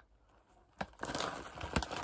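A tortilla-chip bag crinkling as it is handled and turned over, starting about a second in with a sharp crackle and a few more sharp crackles near the end.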